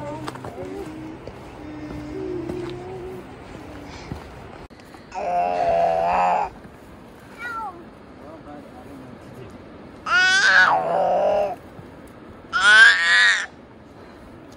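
A toddler's voice calls out three times with wordless, drawn-out sounds whose pitch slides up and down. The last call is the highest.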